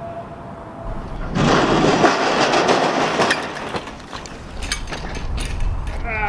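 Bicycle ridden down a long sheet-metal playground slide: a loud rattling rumble of tyres and frame on the steel for about two and a half seconds. A few sharp clatters follow as the bike wrecks at the bottom.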